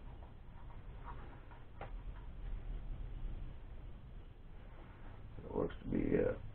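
Quiet handling sounds of a plastic drone body being held and rubbed clean: faint scratchy rubbing with a few light ticks and clicks over room noise. A brief louder sound comes near the end.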